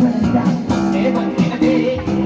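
Armenian pop band playing live: a guitar plays over sustained low bass-guitar notes.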